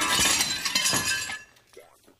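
Glass shattering: a loud smash with crashing and tinkling that fades away over about a second and a half.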